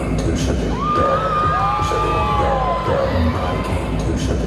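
Audience cheering with high, drawn-out whoops and shouts, over a music track with a steady deep bass.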